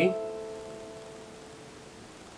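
Yamaha digital keyboard's piano voice sounding an A minor chord (A, C, E) that is held and fades away over about a second and a half.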